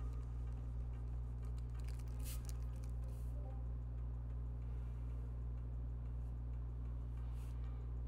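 A metal mechanical pencil scratching lightly on paper in short strokes, heard most about two to three seconds in and again near the end. A steady low electrical hum runs underneath.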